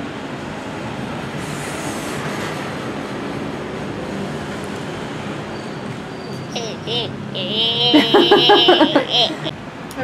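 Steady hum of street traffic, then about six seconds in a boy's high, drawn-out wordless cry that lasts about three seconds and is the loudest sound.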